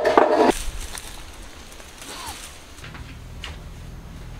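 A voice stops about half a second in, then quiet room noise with a couple of faint knocks and a low steady hum.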